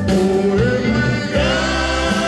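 Live rock band playing with a male lead vocal, heard from the audience in a concert hall. The voice wavers, then a little past halfway it moves to a higher note and holds it.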